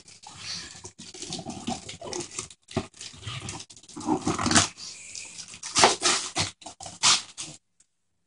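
Wrapping paper being torn and crinkled by hand as a present is unwrapped, in irregular rustling bursts with short pauses, and a couple of brief voiced sounds partway through.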